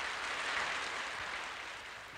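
Audience applauding, the clapping dying away.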